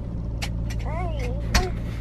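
Steady low rumble of the limousine's running engine, heard inside the cabin. A short murmured voice sounds about halfway through, and there is a soft knock near the end.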